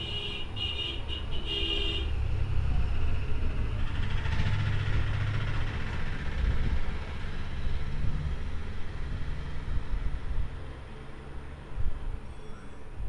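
Steady low rumble of background road traffic. A run of short, high-pitched beeps or toots sounds over the first two seconds, and a brighter hiss swells about four to six seconds in.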